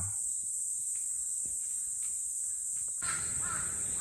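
Mountain forest ambience: a steady high-pitched chirring of insects, with a bird calling about three seconds in.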